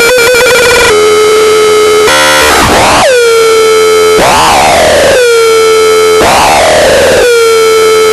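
Homemade CMOS mini modular synth, built on 4093 and 4077 logic chips, giving a loud, harsh square-wave buzz. About two seconds in, the tone starts swooping down in pitch and settling again, about once a second.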